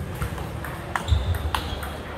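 Table tennis rally: the plastic ball clicking sharply off bats and table several times, about half a second apart. From about a second in there is a high, thin squeak of a shoe on the sports floor, with low thuds of footwork.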